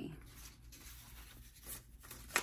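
Faint rustling and flicking of paper prop-money bills being handled and counted by hand, with a sharper rustle near the end.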